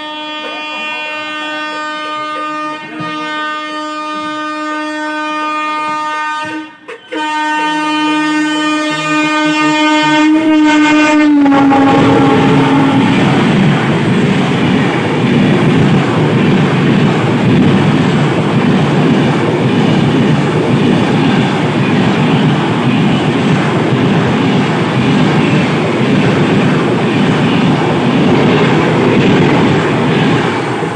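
A train horn sounds one long note, broken briefly about seven seconds in, and drops in pitch about eleven seconds in as it passes. Then comes the loud rush and clatter of a passenger train passing close by on the next track, as heard from the open door of a moving train.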